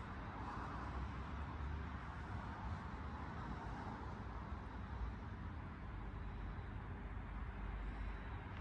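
Quiet outdoor background: a steady low hum of distant traffic.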